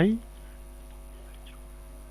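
Steady electrical mains hum with a ladder of even overtones, carried on the recording throughout. A man's spoken word ends right at the start.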